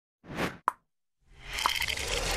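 Intro animation sound effects: a short soft swish, then a sharp pop, then after a silent gap a swell of noise that builds toward the end.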